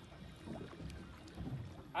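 Low, steady rumble of wind and water aboard a small boat on open sea, with faint voices.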